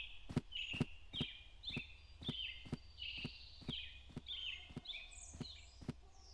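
Fairly faint birds chirping in short falling notes, one after another, over a steady low hum. A sharp tap comes about twice a second, like small footsteps.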